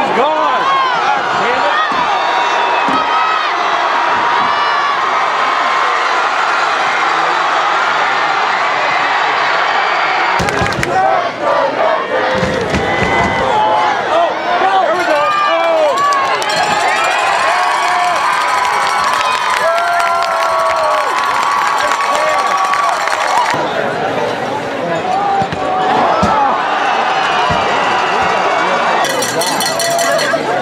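Football crowd cheering and shouting, many voices yelling at once during long touchdown plays. The crowd sound changes abruptly a few times, about a third of the way in and again past the middle.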